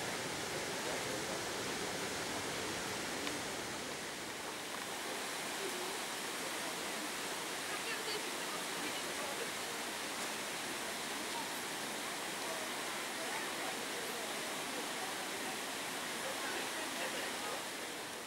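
Steady rushing roar of the glacier-fed Trümmelbach waterfall, an even wash of water noise with no breaks. Faint voices can be heard under it.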